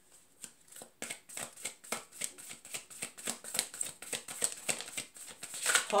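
A deck of oracle cards being shuffled by hand. From about a second in there is a quick, irregular run of soft card clicks and flicks.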